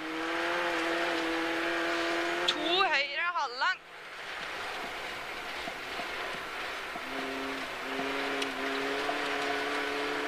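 Rally car engine heard from inside the cabin, held at steady high revs over a rushing road noise. It drops away about four seconds in as the car slows, then pulls again at lower revs from about seven seconds in, climbing slightly.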